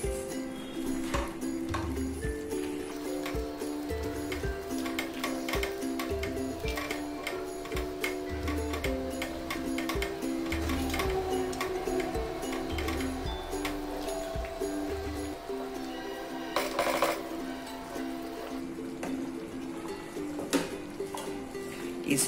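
Background music of held, slowly changing notes, with faint clicks from a spatula stirring thick gravy in a non-stick pan.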